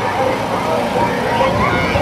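People talking close by, voices overlapping, over the steady low running of a passing parade float's vehicle.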